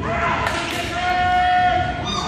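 Game sound in a gym: a basketball bouncing on the hardwood court under spectators' voices, with one drawn-out shout held steady for most of a second near the middle.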